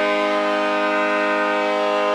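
Arena music after a home goal: one steady, held chord of several tones over the public-address system.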